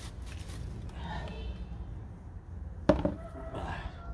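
A single sharp knock about three seconds in, as a bamboo eel-trap tube is knocked against a plastic basin while being tipped to empty an eel out, over a steady low rumble.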